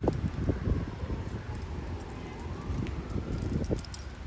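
Outdoor ambience with a steady low wind rumble on a phone microphone and irregular soft thumps from walking and handling the phone.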